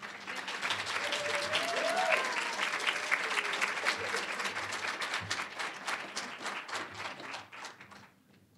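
Audience applauding, a dense patter of many hands clapping that swells in the first second, holds, then thins out and stops near the end.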